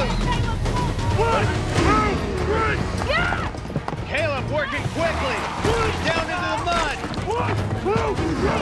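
Several people shouting short calls one after another, over a steady low music bed.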